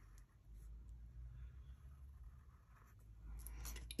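Faint scratching of a pencil tracing a circle on a sheet of paper, the outline of a template to be cut out.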